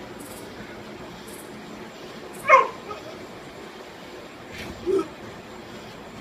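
A short, high yelp that drops quickly in pitch about two and a half seconds in, and a shorter, lower yelp near the end, over a steady background hiss.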